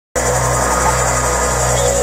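Live band's opening intro: electronic music on a steady low drone, with a sustained higher tone held above it. It cuts in suddenly at the very start.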